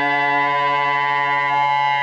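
Saxophone holding one steady low note, unchanging in pitch.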